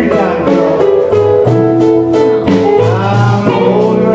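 Live blues band playing: electric guitar over bass, keyboard and a steady drum beat, with a few bent notes near the end.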